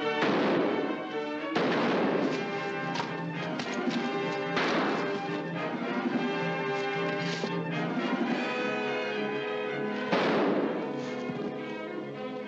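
Orchestral film score playing under several musket shots. Each shot is a sharp crack that rings on briefly, about four loud ones: near the start, twice more in the first five seconds, and about ten seconds in.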